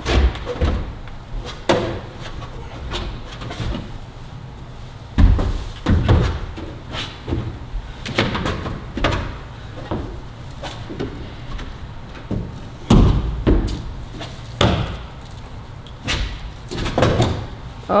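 Climbing shoes and hands hitting large plastic holds on a steep bouldering wall: a series of dull thuds and knocks a second or more apart. The heaviest thuds come at about five to six seconds in and again near thirteen seconds.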